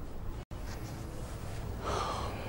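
Steady low room hum and hiss, broken by a brief dropout to silence about half a second in, with a short breath near the end.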